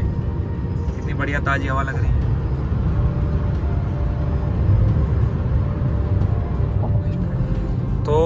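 Steady low rumble of road and engine noise inside the cabin of a diesel Suzuki car cruising along a highway.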